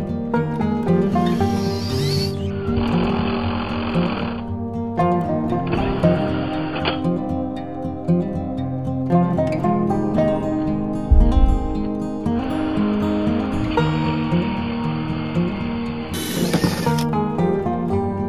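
Background music, with several bursts of a cordless drill running a hole saw through a plastic PVC junction box lid, each lasting a second or a few.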